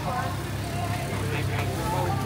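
Street traffic noise: a steady low engine rumble from a nearby vehicle, with faint voices in the background.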